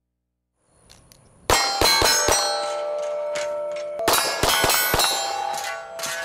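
A series of sharp metallic clangs, each left ringing, struck steel. They come in two quick groups of about four strikes, the first about a second and a half in and the second about four seconds in.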